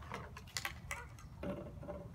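A few light clicks and knocks from toy reindeer being handled, over a low steady rumble.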